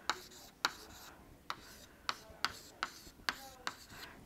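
A run of about eight light, sharp taps or clicks, unevenly spaced at roughly two to three a second.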